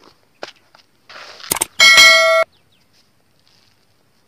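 Subscribe-button animation sound effect: a few soft clicks and a brief rush, then a loud, bright notification-bell ding about two seconds in that holds for about half a second and cuts off abruptly.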